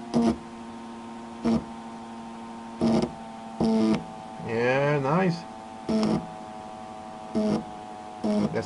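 Steady electrical hum of a pulse motor generator, broken about six times by short buzzing snaps of sparks as two alligator clips on its AC output are brought together. A wavering, voice-like sound is heard about halfway through.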